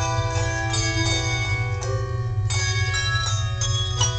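Handbell choir ringing a tune on handbells: several bells struck together in chords, a new chord every half second to a second, each left to ring on over the next.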